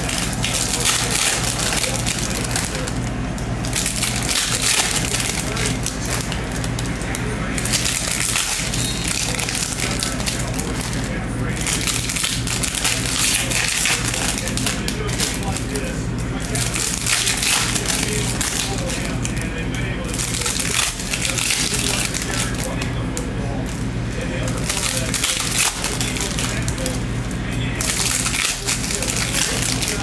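Foil trading-card pack wrappers crinkling and tearing as packs are opened and cards handled, in repeated crackly bursts every few seconds over a steady low hum.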